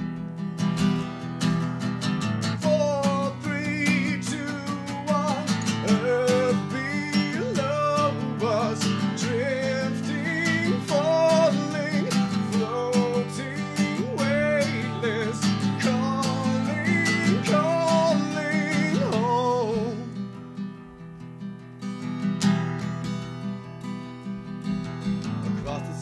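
Acoustic guitar strummed steadily, with a wordless vocal melody over it from about two seconds in until about twenty seconds in. After that the guitar carries on alone, a little quieter.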